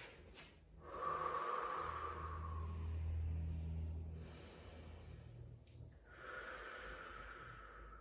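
A woman taking two long, audible breaths, in through the nose and out through pursed lips, as a rest between yoga exercises.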